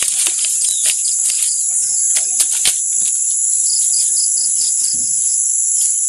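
A loud, steady, high-pitched chorus of insects such as crickets, with a few faint clicks beneath it.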